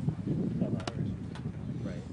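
Indistinct, overlapping voices of players and onlookers chattering, with a sharp click a little under a second in.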